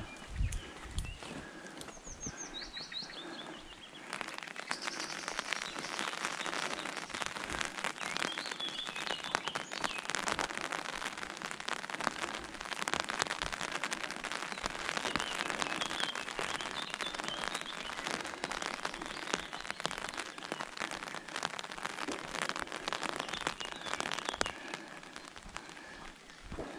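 Rain pattering on an open umbrella overhead, a dense crackle of drops that starts abruptly about four seconds in. Birds chirp and call now and then.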